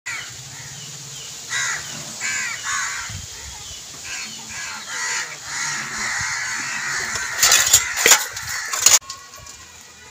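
Crows cawing, a run of short calls one after another. Near the end comes a loud, rattling clatter that cuts off suddenly.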